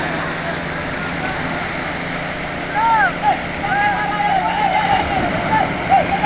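Surf washing steadily over the shallows, with fishermen's voices calling out from about three seconds in as they haul a beach-seine net.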